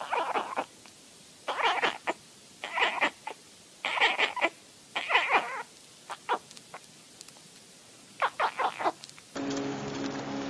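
Newborn kitten mewing, a short cry about every second, with a quicker run of cries near the end.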